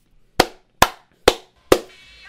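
Four slow, sharp hand claps, evenly spaced about half a second apart.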